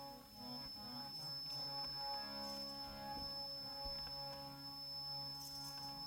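Yamuna harmonium (vaja) playing soft, sustained reed chords and melody notes that change every second or so, as an instrumental lead-in to the keertan. A thin, steady high-pitched whine sits behind it.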